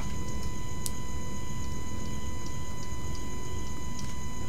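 Steady electrical hum of the recording setup, with a thin constant high whine over a low rumble. A few faint ticks are scattered through it.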